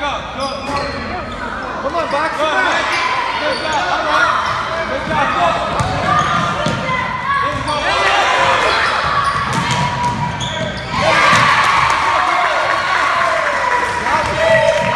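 Basketball bouncing on a hardwood gym floor during play, with spectators shouting over it and echoing in the hall; the shouting gets louder about eleven seconds in.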